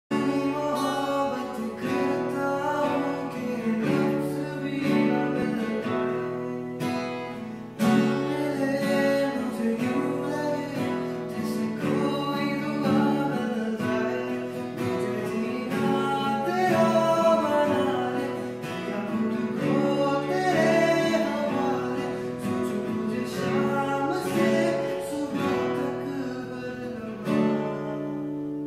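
A man singing a slow Hindi love song to his own strummed acoustic guitar.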